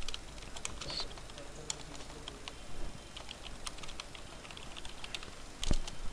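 Typing on a computer keyboard: quiet, irregular keystroke clicks, several a second.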